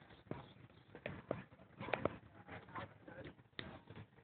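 Footsteps on a concrete path: uneven, sharp steps about one or two a second.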